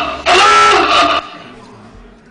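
An electronic quiz-show sound effect, a short jingle with steady pitched notes, sounding again right after an identical first play and cutting off about a second in.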